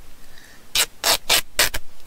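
A thick strip of fabric torn by hand to make it thinner, in four quick rips starting a little under a second in.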